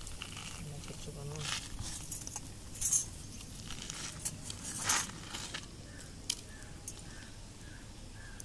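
Metal hand tools clinking and tapping as they are picked up and worked against a pipe fitting: a handful of sharp, separate clinks, the loudest about three and five seconds in.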